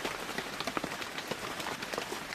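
Rain sound effect: a steady hiss of falling rain with many small drops ticking through it.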